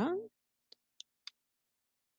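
Three faint clicks of a computer mouse, about a quarter second apart.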